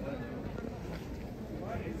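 Faint, distant men's voices over a low, steady street background noise.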